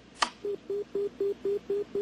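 Electronic beeping from a computer console: a sharp click, then a steady run of short, low beeps on one pitch, about four a second.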